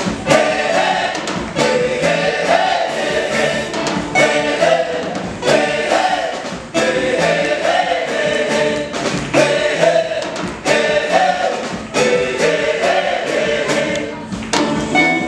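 Church choir singing gospel music through microphones, with a regular beat running underneath.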